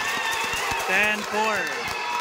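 Spectators shouting and calling out during a basketball game, several voices rising and falling, with scattered knocks and thumps from the play on the court.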